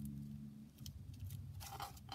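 Fingers handling and pressing a paper pocket on a table, with a light click and then a short paper rustle near the end, over a steady low hum.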